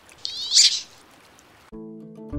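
A wood duck gives one high, rising squeal over the steady rush of flowing water; music begins near the end.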